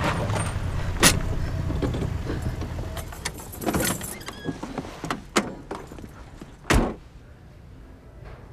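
Car engine rumbling, heard from inside the cabin, dying away about halfway through, with a few clicks and knocks. Near the end a car door shuts with a heavy thump, the loudest sound.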